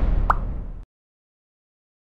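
A short plop sound effect with the animated logo, about a third of a second in, over the fading tail of the intro music, which cuts off completely just under a second in.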